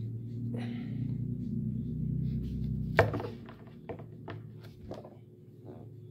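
Tarot cards being handled: one sharp tap about halfway through, then a few light clicks. Under it, a low hum swells and fades over the first half.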